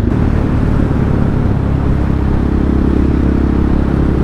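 Single-cylinder engine of a KTM Duke 690 with an Akrapovic exhaust, heard from the rider's seat while riding on a steady throttle, the note rising a little about halfway through. Wind noise runs under the engine.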